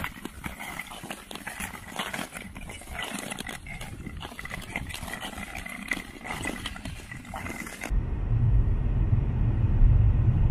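Ice skate blades scraping and gliding on natural lake ice in uneven strokes. About eight seconds in it cuts abruptly to a louder, steady deep rumble of road noise inside a moving car.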